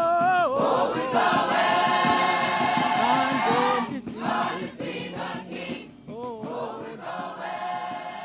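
Gospel choir singing in long held notes that break off briefly about halfway through.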